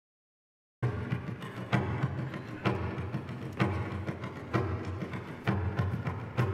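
Bodhrán (frame drum) played live in a steady rhythm: a strong accented beat about once a second with lighter strokes in between. It starts suddenly just under a second in.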